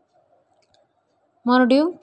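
Plastic craft wire being handled, with a few faint ticks over a quiet background, then a voice starts speaking about a second and a half in.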